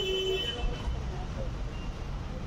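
Street traffic rumble, with a short car horn toot in the first half second or so.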